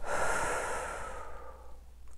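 A woman's long, slow breath out in a deep 'balloon breath' calming exercise. It starts strong and fades away over about two seconds.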